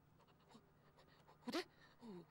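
Quiet room tone with a faint low hum and soft breaths from a woman, then she speaks one short word about a second and a half in.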